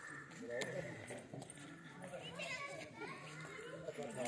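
Many voices, children among them, chattering and calling out indistinctly, as of children at play.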